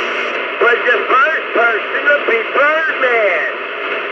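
CB radio transmission: a man's voice comes over the radio through steady static hiss, starting about half a second in and stopping shortly before the end.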